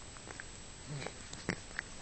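A domestic cat grooming itself: a few short, wet licking clicks from its tongue on its fur, the loudest about halfway through.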